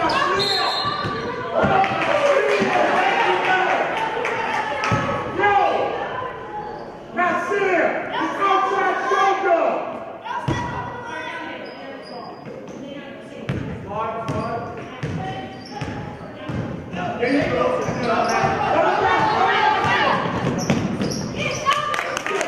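A basketball bouncing on a gym's hardwood floor, with voices calling and shouting across the echoing hall during play.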